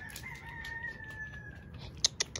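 Rooster crowing: one long, drawn-out call held on nearly one pitch, sagging slightly before it fades out near the end.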